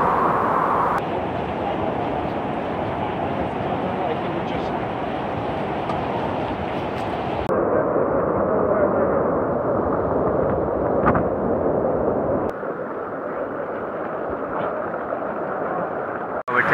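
Steady rushing of the Virgin River's shallow water through the Narrows, with no single event standing out. Its tone and level shift suddenly three times, about a second in, midway and near the end, as one clip cuts to the next.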